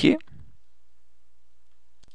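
A spoken word trails off at the start, then quiet room tone with a steady low hum.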